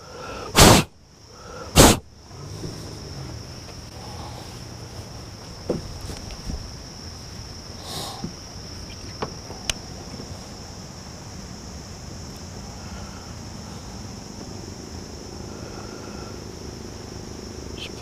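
Steady high-pitched drone of an insect chorus, with two loud thumps in the first two seconds and a few faint clicks later on.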